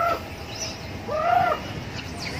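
A baby macaque giving short coo calls, twice: each is a brief cry that rises and then falls in pitch. One comes right at the start and one about a second in.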